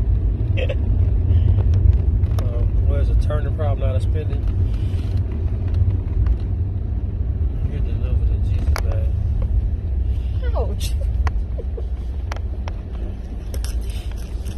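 Steady low road and engine rumble inside a moving car's cabin, with a short burst of laughter a few seconds in and a few light clicks and knocks.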